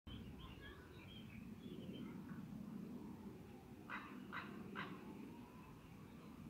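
Common raven croaking three times in quick succession, about half a second apart, with faint small-bird chirps before them.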